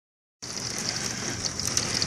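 Heavy rain falling, a steady hiss with many sharp patters of drops, heard through a window pane; it sets in about half a second in.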